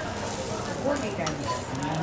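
Food sizzling as it fries, a steady hiss, with a few sharp metal clicks of utensils about halfway through and near the end.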